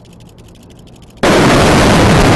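Explosive demolition charges going off on a steel suspension bridge: after about a second of quiet, a sudden very loud blast that carries on unbroken, heard a moment after the flashes because of the distance.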